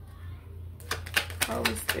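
Tarot cards being shuffled by hand: a fast run of crisp card snaps and clicks starting about a second in.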